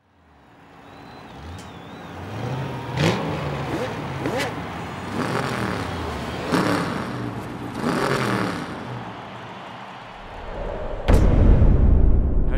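Race car engines fading in from silence, then revving and passing one after another, each pass a gliding rise and fall in pitch. A sudden deep boom about eleven seconds in.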